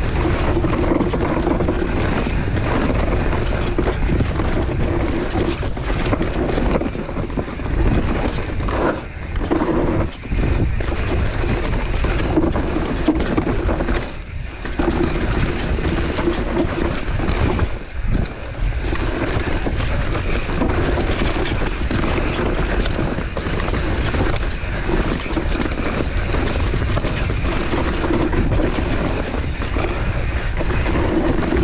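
Wind rushing over a point-of-view camera's microphone, mixed with the tyre and trail noise of a mountain bike (a mullet-setup Propain Spindrift) descending dirt singletrack at speed. The steady noise dips briefly a few times.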